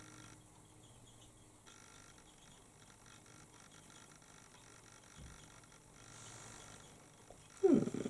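Faint, soft brushing of a small eyeshadow brush being worked over the eyelid close to the microphone, under a quiet room tone, followed by a short spoken 'hmm' near the end.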